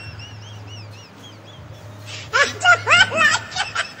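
A man's voice breaks in with a short burst of wordless vocal sounds about two seconds in, over a steady low hum. Faint, high, short chirps repeat several times in the first second and a half.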